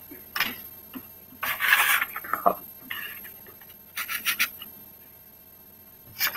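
Irregular rubbing and scraping noises in short bursts, loudest for about a second partway through, followed by a few quick sharp clicks, heard over an online-class call.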